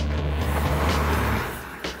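Gas torch flame burning with a steady hiss while it heats seized, rusted moving parts red hot to free them; it eases off about one and a half seconds in.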